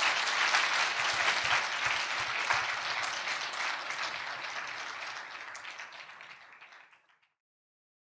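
Audience applauding, loudest at first and dying away over about six seconds, then cutting to silence about seven seconds in.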